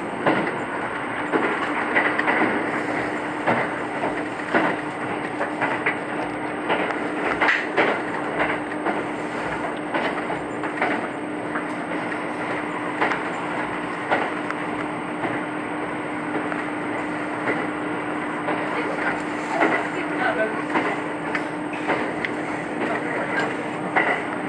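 Cabin noise of a moving diesel railcar: a steady running hum with irregular sharp clicks of the wheels over the rails.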